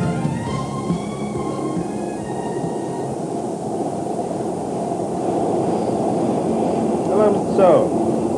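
Steady rumble of a Singapore MRT train running, heard inside the passenger car. Background music fades out in the first couple of seconds, and a man's voice comes in near the end.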